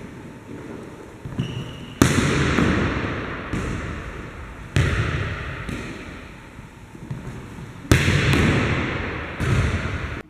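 Volleyballs being struck during a serve-receive passing drill on a hardwood gym court: sharp smacks come about every three seconds, each quickly followed by a second hit. Every strike rings out in the gym's long echo.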